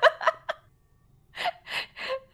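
A person gasping: a short pause, then two sharp, breathy intakes of breath near the end.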